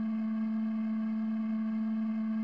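Background film music: a single synthesizer note held steady, with no other sound.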